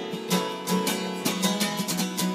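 Acoustic guitar strummed hard and fast, about four or five sharp strokes a second ringing out as chords.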